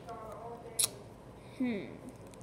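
A small plastic LEGO dog figure handled between the fingers, giving one sharp click a little under a second in.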